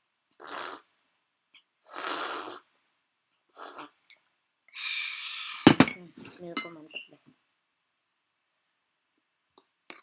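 Short breaths through the nose while gulping milk from a cup. Then a loud, sharp knock of the cup being set down on the table, followed by a few lighter clinks and a brief voiced sound.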